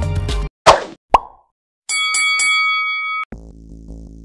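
Background music cuts off, followed by a quick whoosh and a sharp plop sound effect, then a bright ringing chime struck a few times in quick succession. Quieter new background music starts near the end.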